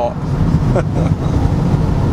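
Steady low rumble of road and engine noise inside the cabin of a moving Mercedes-Benz car, with a short laugh at the start.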